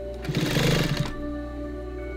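Electric sewing machine stitching cotton fabric in a short run of under a second, starting about a quarter second in, over steady background music.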